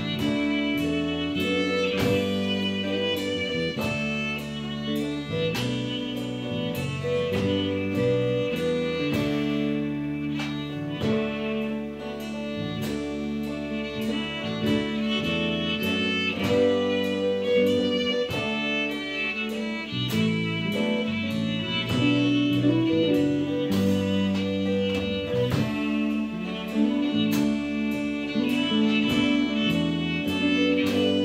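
Celtic folk band playing an instrumental tune: fiddle carrying the melody over electric and acoustic guitars and bass guitar, with a drum kit keeping a steady beat of about two strikes a second.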